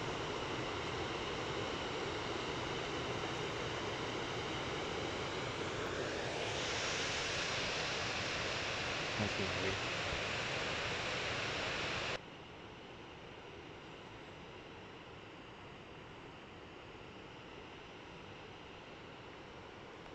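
Steady rush of river rapids. The rush drops suddenly to a quieter, duller level about twelve seconds in.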